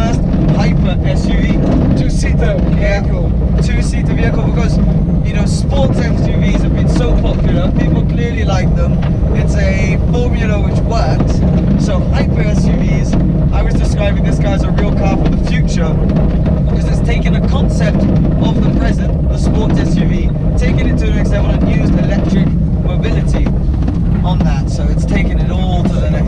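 Loud, steady driving rumble inside the GFG Style Kangaroo electric SUV, tyre and wind noise with no engine note. Voices talk faintly under it.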